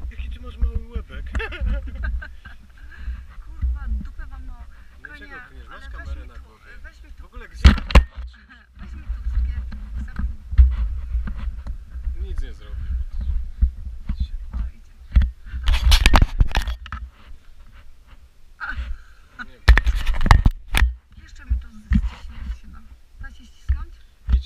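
Handling noise from a handheld camera: a steady low rumble with several sharp knocks, the loudest about 8, 16 and 20 seconds in. Faint voices can be heard underneath.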